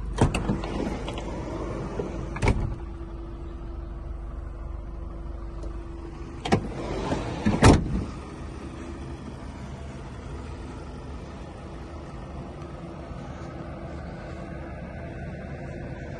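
A van's doors being handled: several sharp clunks and knocks in the first eight seconds, as a door is opened and shut. A steady low hum runs underneath.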